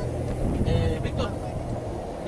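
People talking over the steady low hum of an idling vehicle engine, the hum fading after the first half second.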